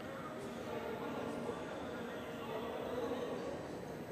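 Steady background ambience of a large indoor arena with faint, indistinct voices; no distinct single sound stands out.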